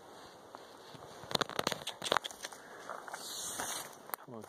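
Dry twigs and rotten wood debris crackling and snapping: a quick run of sharp cracks from about a second in, then a softer rustle near the end.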